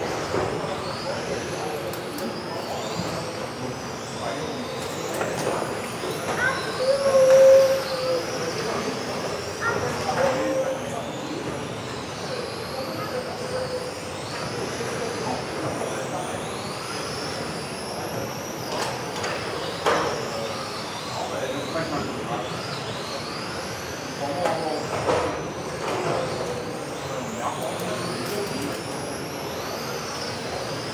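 Electric 1:10 RC touring cars racing around an indoor track, their motors giving high whines that rise and fall over and over as the cars accelerate out of corners and brake into them, with several cars overlapping. Voices murmur underneath.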